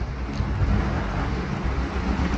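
A steady low rumble of background noise with no distinct events, in a pause between spoken sentences.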